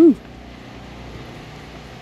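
A person's short "woo" whoop right at the start, rising then falling in pitch, followed by a steady low background hum with no other events.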